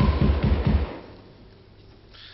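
About five quick, low thuds in under a second, each dropping in pitch, then quiet room tone.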